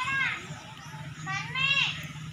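Two short high-pitched cries from voices, rising and then falling in pitch, one at the start and one about a second and a half later, over a low steady hum.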